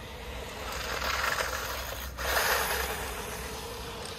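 Haiboxing 2997A brushless RC truck running on a 2S battery over asphalt: a rushing motor-and-tyre noise with a faint steady whine. It swells, cuts out briefly about halfway through, then comes back louder and eases off.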